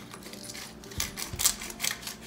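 Hand-held pepper mill grinding black peppercorns: a quick run of crunching clicks, several a second, starting just before a second in.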